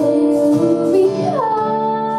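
A woman singing with a strummed acoustic guitar; about a second and a half in, her voice slides down into a held note.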